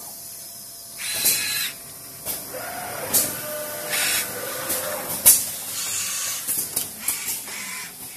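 Automated pneumatic wire-processing machinery cycling: short bursts of compressed-air hiss from valves and cylinders, with sharp clicks of grippers and actuators, the loudest about five seconds in. A brief motor whine comes a few seconds in.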